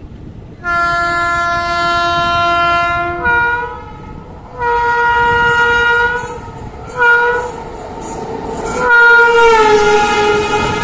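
Indian Railways locomotive horn on the oncoming train sounding several blasts, long and short, as it approaches and passes on the next track. The last blast drops in pitch as the locomotive goes by. Steady rail clatter from the moving train lies underneath.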